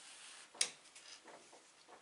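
A sharp click about half a second in, then a few softer clicks and rustles, from a crochet hat and the things around it being handled on a table.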